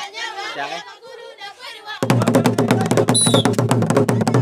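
People's voices talking, then about halfway through, loud fast drum-and-percussion dance music starts abruptly, with a brief high tone sounding over it about a second later.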